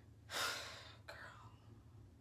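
A woman's short breathy gasp about half a second in, then a fainter breath, over a low steady hum.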